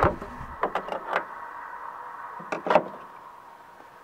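A few light clicks and knocks from handling a handheld battery tester as it is set down on top of the battery, over a faint steady hiss.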